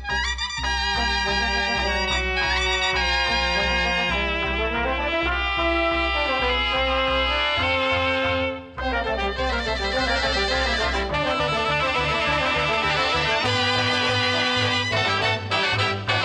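A Catalan cobla playing live: tenora, tibles and trumpets carrying the tune over a double bass sounding a steady pulse of low notes. The band drops out briefly about eight and a half seconds in, then resumes.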